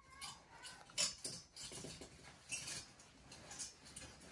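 Young macaque giving faint, brief high squeaks amid short rustles and clicks, the loudest a sharp click about a second in.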